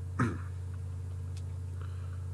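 A man's short cough about a quarter second in, then only a steady low hum of a small-room recording.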